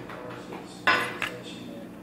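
Fork and table knife against a plate while cutting into a serving of enchiladas: one sharp clink about a second in, then a lighter tap.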